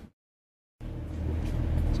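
Dead silence for most of a second, then the steady low rumble of a bus heard from inside the passenger cabin.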